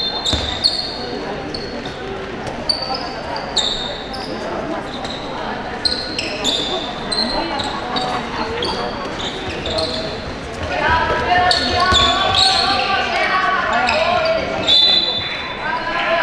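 Handball game in a reverberant sports hall: the ball bouncing on the wooden floor, sneakers squeaking and players shouting, louder from about two-thirds of the way in. Near the end comes a short, loud, high referee's whistle blast.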